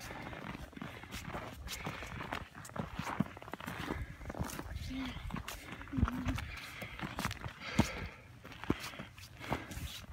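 Footsteps crunching irregularly over a thin layer of snow on rocky, gravelly ground. A couple of brief voice sounds come about five and six seconds in.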